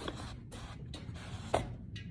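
A dog's paw shifting on a wooden tabletop: faint scratching and rubbing, with a light tap about one and a half seconds in.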